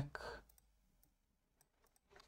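A few faint, scattered clicks of computer keyboard keys.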